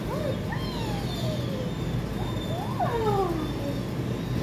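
A dog whining in several drawn-out cries that rise and fall in pitch, the loudest near the end, over a steady low hum.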